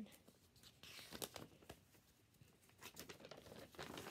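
Faint rustling and crinkling of a folded paper booklet being handled and opened, with a few soft scattered clicks and a brief rustle about a second in.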